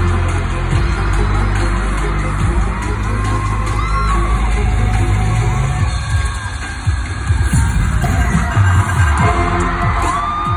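Loud concert music over an arena sound system, a deep sustained drone that breaks into separate heavy beats about six seconds in, with fans screaming over it.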